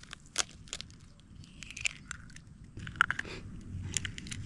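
Eggshells cracking and crunching as gloved hands pull eggs apart over a wooden bowl: a few sharp clicks early, then crackly breaks of shell twice.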